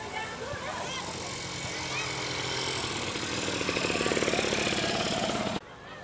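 A motor engine runs with a rapid, even pulse, growing louder over a few seconds, then cuts off abruptly near the end, over the voices of people nearby.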